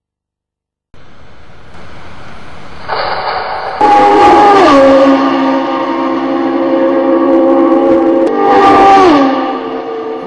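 A loud horn-like chord of several steady tones sounds over a rumble that builds up in steps. The chord drops in pitch twice: once shortly after it begins, and again near the end.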